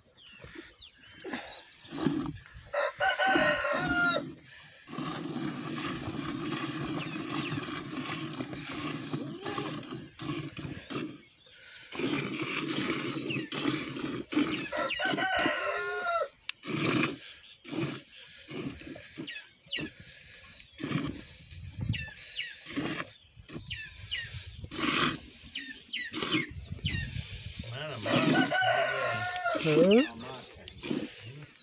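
A buffalo being milked by hand, rhythmic squirts of milk hitting a steel pot. A rooster crows twice in the background, the first a few seconds in and the second about halfway through.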